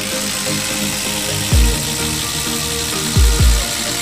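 Milwaukee M12 cordless impact driver running steadily under load as it drives a long bit into a wood stump, stopping right at the end. Electronic dance music with a heavy kick drum plays over it.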